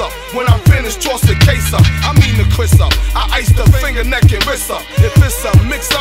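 Hip hop track: rapping over a beat with a deep bass line and drums.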